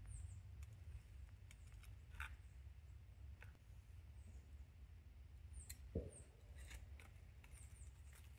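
Near silence over a low steady rumble, broken by a few faint clicks and knocks of steel pliers and tin cans as aluminium castings are lifted out of casting sand; the loudest knock comes about six seconds in.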